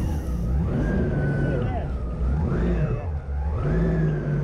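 Engine of a Ferrari-bodied water craft revving up and down repeatedly as it runs across the sea, its pitch rising and falling about once a second.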